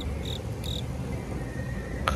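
An insect chirping in a regular series of short high-pitched pulses, about four a second, which stop about a second in, over steady low background noise.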